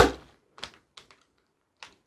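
Mosaic nipper snapping corners off a square glass tile, four sharp cracks: a loud one at the start, then three fainter ones over the next two seconds.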